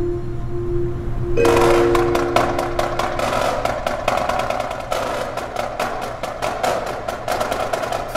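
Indoor percussion ensemble: held low mallet-keyboard tones, then about a second and a half in the drumline's marching snare drums and battery come in with fast, dense strokes and rolls. A steady low hum from an overhead air-conditioning vent runs underneath.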